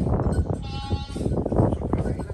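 Goat kids bleating, one clear bleat about half a second in, over low thumps and rumble from walking and handling the phone.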